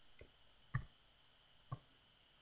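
Computer mouse clicks: a faint click, then two sharp clicks about a second apart.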